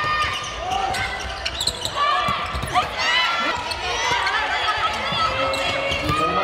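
Handball bouncing and striking the court floor during play, amid players' shouts and voices from the stands, echoing in a large sports hall.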